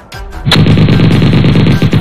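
Rapid machine-gun fire sound effect, starting suddenly about half a second in and continuing as a loud, fast, unbroken stream of shots.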